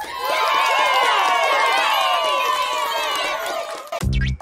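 A group of children's voices cheering and shouting together in one long, drawn-out cheer that cuts off just before the end.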